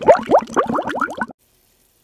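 Cartoon bubbling sound effect: a quick run of short rising pops, about ten a second, that cuts off suddenly after just over a second.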